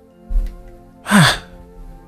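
A narrator's voice letting out a breathy, sighing "ah" that falls steeply in pitch, over a steady background music bed, with a short low thump shortly before it.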